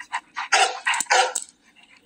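Dog barking: a quick run of short, breathy barks in the first second and a half.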